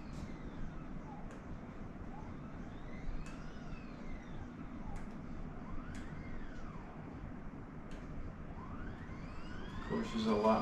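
10Micron GM4000 equatorial mount's drive motors whining as it slews: each move starts, ramps up in pitch, then winds back down, three or four times over.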